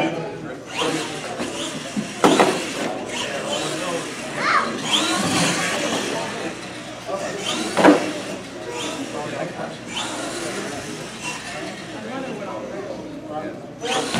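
Radio-controlled monster truck running and jumping, its motor whining up and down in pitch with the throttle. There are two sharp knocks, about two seconds in and again near eight seconds, as the truck hits and tips over on the ramps.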